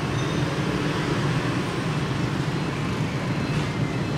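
Steady street traffic noise, a continuous low hum of passing motorbike traffic without any single vehicle standing out.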